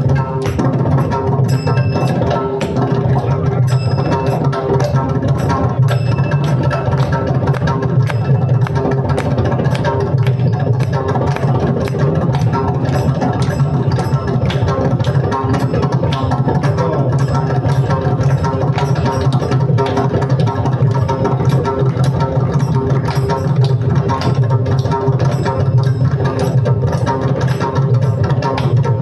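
Mridangam, the South Indian double-headed barrel drum, played by hand in a fast, unbroken stream of strokes, with steady held tones underneath.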